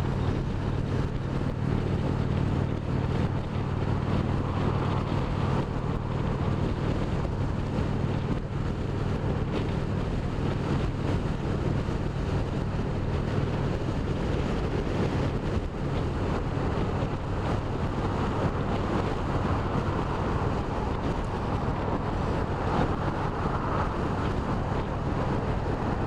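Indian Springfield Dark Horse's 111 cubic inch V-twin running steadily at highway cruising speed, with a constant rush of wind and road noise over it.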